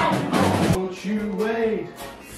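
A live band with drums and electric guitar ends a song. The full band stops about three quarters of a second in, leaving one held, wavering note that fades away.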